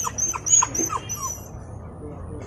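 Puppy whimpering: about five short, falling whines in quick succession, dying away after the first second or so.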